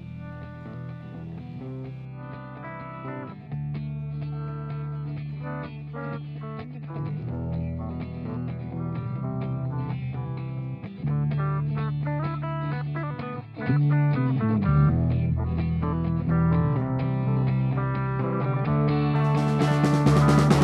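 A rock band's song intro on electric guitars over a sustained bass guitar line, getting louder in steps. Just before the end the full band with cymbals comes in.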